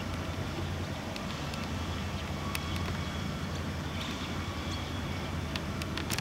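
Steady low hum and rumble of outdoor background noise, with a few faint sharp ticks now and then.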